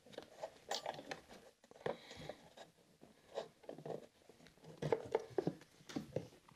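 Faint handling noise of the foam air filter and its plastic cover being fitted back into a portable inverter generator: scattered small plastic clicks and rustles at irregular intervals.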